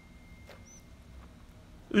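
Quiet room tone, with a faint click about half a second in and a brief faint high chirp just after it.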